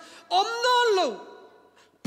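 A man's long voiced sigh into a handheld microphone, falling in pitch as it trails off after about a second, then quiet.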